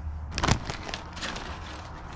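Plastic bag of potting soil crinkling and rustling as it is lifted, with a knock about half a second in.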